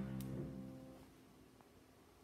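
Piano's final chord held and dying away, gone by about a second in. A short click sounds just after it starts.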